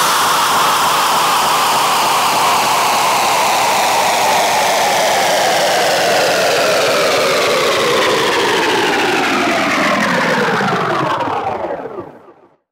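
Outro of a hardcore electronic track: a noisy, whirring synth drone whose pitch sinks slowly and steadily, like a machine winding down, then fades out near the end.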